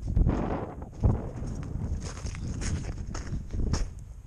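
Footsteps crunching through snow on lake ice, irregular steps with two heavier thumps in the first second.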